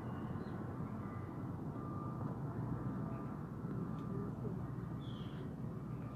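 Steady low outdoor background rumble and hum, such as distant traffic, with a faint short chirp about five seconds in.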